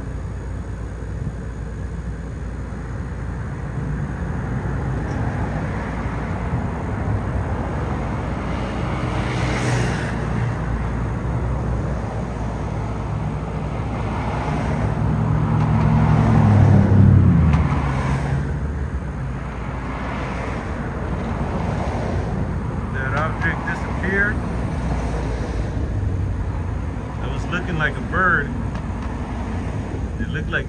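City road traffic: a steady low rumble of passing vehicles, with one engine swelling loud as it goes by about halfway through.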